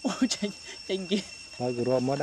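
A steady, high-pitched insect chorus drones throughout, with a man's voice speaking short phrases over it at the start, about a second in, and near the end.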